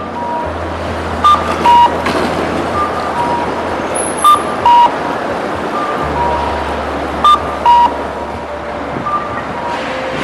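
Japanese pedestrian crossing signal sounding its cuckoo-style two-note chirp, a higher beep then a lower one, about every three seconds. Fainter answering pairs fall between them, over steady street and traffic noise.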